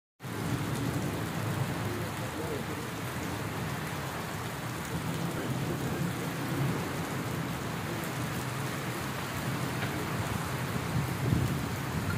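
Steady rain falling and pattering on wet brick paving.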